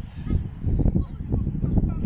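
Uneven low rumbling on the microphone, with faint high calls of young children playing football.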